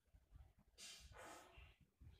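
Near silence: room tone, with one faint breathy rustle a little under a second in.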